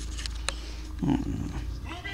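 A black-and-white cat purring close to the microphone while it is massaged. There are a few soft clicks in the first half second and a man's brief "oh" about a second in.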